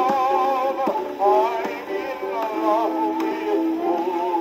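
A 1925 Grey Gull 78 rpm shellac record playing on an acoustic phonograph: singing with instrumental accompaniment, with long wavering held notes. The sound is thin and midrange-heavy, with almost no bass.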